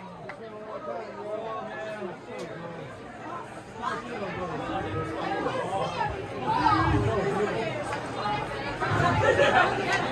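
Indistinct chatter of several voices in a crowded music venue, with a few low thumps in the second half.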